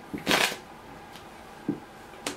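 A deck of Spanish playing cards being handled: a short rustle of the cards lasting about half a second, then a soft low thump near the end as a card is laid on the cloth-covered table.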